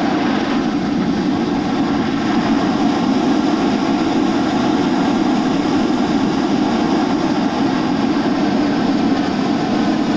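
Hot-air balloon propane burner firing overhead: a loud, steady roar that doesn't let up.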